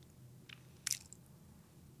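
Two faint, short mouth clicks close to a microphone, about half a second apart, in an otherwise quiet pause.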